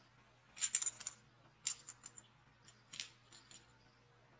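A small rattle insert sealed inside a crocheted ball rattling in short clicking bursts as the work is handled. The first and loudest burst comes about half a second in, with a few fainter ones after.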